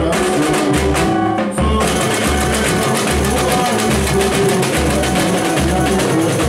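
Live samba played by a samba-school drum section (bateria): surdo bass drums beat a steady pulse under dense snare and hand percussion, with a melody over it. The percussion fills out about two seconds in.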